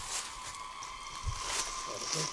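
Rainforest ambience: a steady insect drone holding one thin tone, over a faint high hiss. A soft low thump comes about a second in.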